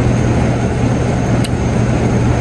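Steady low machine hum over a constant rush of noise, with no letup.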